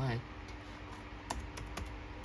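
Computer keyboard being typed on: a few scattered keystroke clicks as a word is entered into a search box, after a voice trails off at the start.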